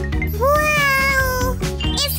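A single cat meow, about a second long, rising and then slowly falling in pitch, over upbeat background music with a steady beat.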